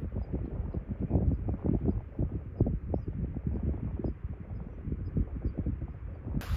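Wind buffeting the microphone: a low, gusty rumble that surges unevenly.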